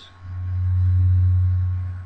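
Steady low electrical hum, swelling up about a quarter second in and easing off near the end.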